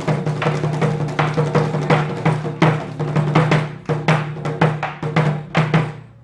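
Korean barrel drums (buk) struck hard with wooden sticks: a fast, dense run of beats that breaks into separate, spaced hits in the second half.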